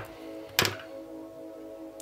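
Soft background music of steady held tones, with a single short thunk about half a second in from the tarot card deck being handled on the tabletop.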